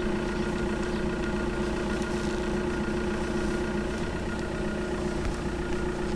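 Vehicle engine idling steadily.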